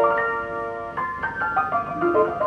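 Ampico reproducing grand piano playing by itself from its roll: a chord held for about a second, then a quick run of new notes.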